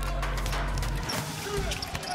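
A basketball dribbled on a hardwood court, bouncing sharply, over a music track whose low notes cut out about a second in.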